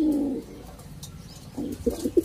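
Domestic pigeons cooing: one coo right at the start, a lull, then short coo notes again near the end.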